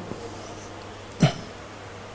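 A pause in talk with faint steady hiss and a low hum, broken once, a little after a second in, by a brief vocal sound falling in pitch, like a short murmur or throat noise.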